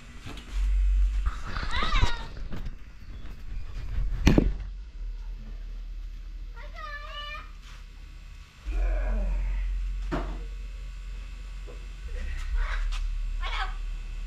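A few short animal calls, including a quick run of repeated chirps about seven seconds in, over a steady low rumble, with a sharp knock about four seconds in.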